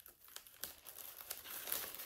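A paper envelope being handled and pulled open: light crinkling and rustling of paper with many small crackles.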